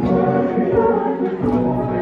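A choir singing, many voices holding chords together.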